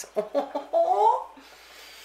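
A woman's voice without words: a few short sounds, then a drawn-out note that rises in pitch. After it comes a breathy in-breath, as of someone smelling the food.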